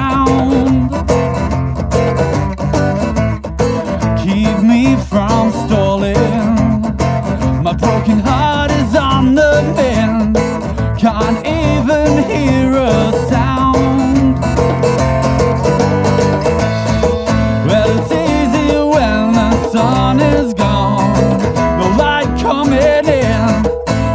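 A band playing an instrumental passage of a song live, led by guitar with drums and cymbals. The music is loud and steady throughout.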